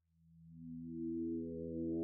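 Electronic intro music fading in: steady synthesizer tones enter one after another, each a step higher than the last, building in loudness.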